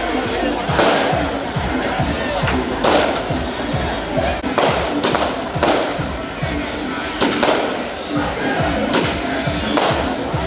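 Loud street-procession music: fast drumming with a crowd, punctuated by sharp crashing hits roughly every one to two seconds.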